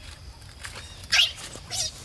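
Macaque screeching: two short shrill cries, the louder one about a second in and a second just before the end.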